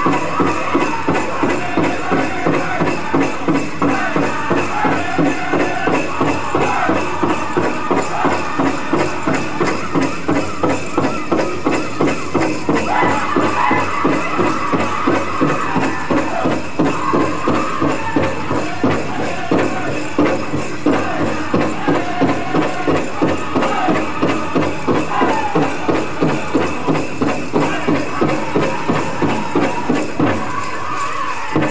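Powwow drum group singing a contest song over a big drum struck in a steady beat, about two strokes a second, with the jingle of dancers' bells.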